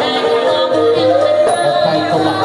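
A female singer amplified through a microphone sings a slow melody that slides between long held notes, over Khmer traditional wedding music accompaniment.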